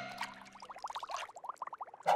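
Cartoon sound effect of a magic potion bubbling in a glass bowl as it is stirred: a faint, quick run of small rising bloops, about ten a second.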